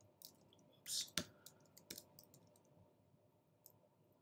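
Faint clicking of computer keyboard keys, typed in short irregular bursts, with one louder click just after a second in.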